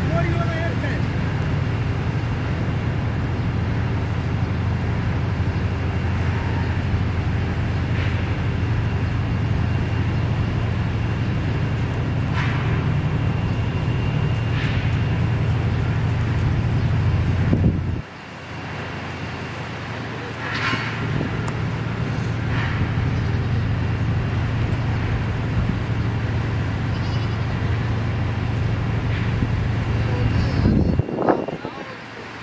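Steady outdoor background noise with a strong low rumble, indistinct distant voices and a few brief animal calls. The rumble drops away suddenly a little past halfway, then builds back over a few seconds.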